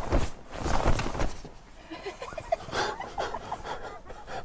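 Clothing rustling and knocking as an arm is flapped at a wasp in the van's open doorway, then a few short, stifled bleat-like laughs.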